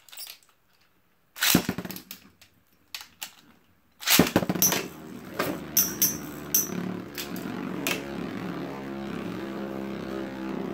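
Two Beyblade spinning tops launched into a plastic stadium with a loud clack about four seconds in, after a sharp click earlier, then whirring as they spin, with several sharp clashes as they strike each other over the next few seconds.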